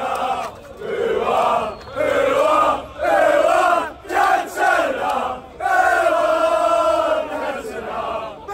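A crowd of football supporters chanting together, loud sung phrases from many male voices with short breaks between them.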